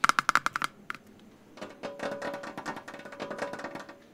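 Fingertips tapping quickly on the lid of a plastic jug, about ten sharp taps in under a second, then a quieter, longer run of fast light clicks and scratches.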